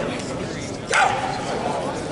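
Spectator chatter in a large gym hall, cut through about a second in by one short, loud cry that falls in pitch.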